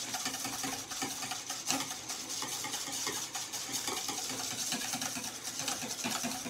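Wire whisk beating soapy water in a stainless steel bowl to work up suds: a steady, quick swishing and sloshing with many small clicks of the wires against the metal.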